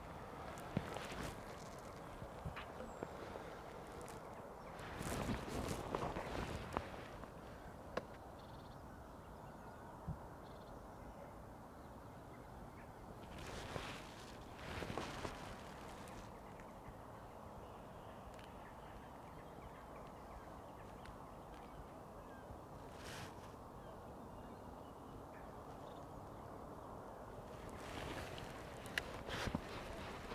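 Faint outdoor riverbank ambience: a steady low rushing noise, with two short spells of louder rustling, one around five seconds in and one around fourteen seconds in, and a few sharp clicks.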